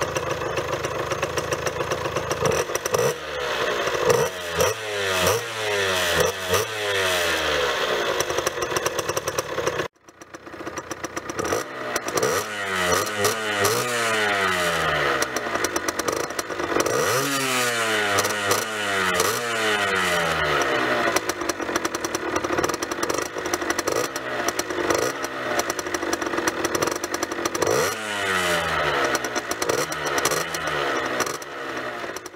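Two-stroke crossmoped engine, with its exhaust restrictor plug pulled, idling and revved in a series of quick blips, each rising in pitch and falling back to idle. The sound cuts out briefly about a third of the way in, then the revving goes on.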